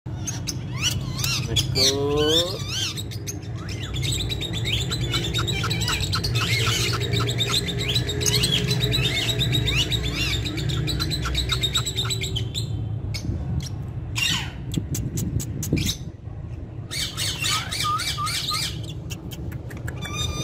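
A female Indian ringneck parakeet chirping and squawking in runs of quick, short calls. The calls thin out for a few seconds past the middle, then pick up again near the end.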